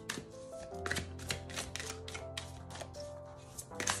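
A tarot deck being shuffled overhand in the hands, a quick run of soft card slaps about three or four a second, over soft background music with sustained notes.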